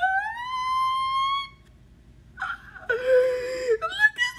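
A woman's high-pitched excited squeal that rises in pitch and is held for about a second and a half. After a brief pause comes a second, lower and breathier held whine.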